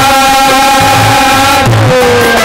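Live Haryanvi ragni accompaniment: one long held melodic note, dead steady, that slides down near the end, over a steady low drum beat.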